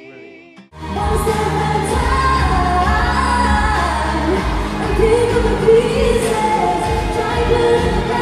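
A held sung note cuts off, and less than a second in a pop song starts abruptly. The song is sung by a female lead singer with backing vocalists over a full instrumental backing with a strong bass.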